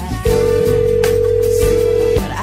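A song's instrumental backing plays under a loud, steady, single-pitch beep like a telephone dial tone. The beep starts about a quarter second in and holds for about two seconds.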